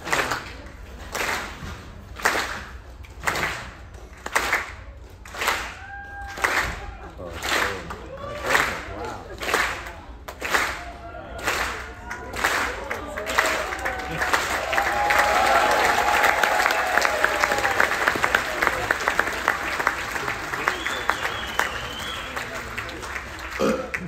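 Theatre audience doing a slow clap: one clap together about every second at first, getting steadily faster, then breaking into continuous applause with cheers and whoops about 14 seconds in.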